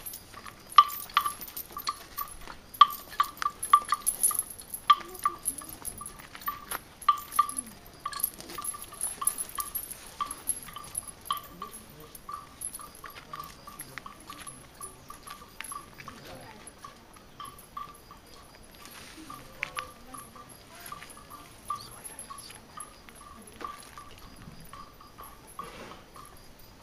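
Neck bells on walking elephants clonking in an uneven rhythm, several strikes a second at first, thinning out later.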